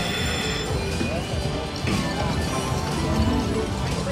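Video slot machine's electronic music and chimes playing as the reels spin, over a steady casino din with faint background chatter.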